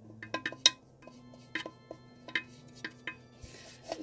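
A paintbrush clicking and knocking against the inside of a hollow plaster pumpkin as white primer is brushed on: a string of sharp, irregular ticks, with a brief scratchy brushing sound near the end.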